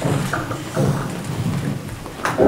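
Indistinct room noise: a low rumble with muffled, unintelligible voices, as people move about between the end of the talk and the worship music.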